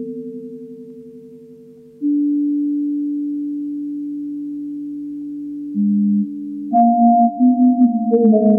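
Slow electronic music made of pure, sine-like tones. A held chord fades away, then a new low note enters sharply about two seconds in and is held. A short lower note follows, and higher stepped notes join near the end.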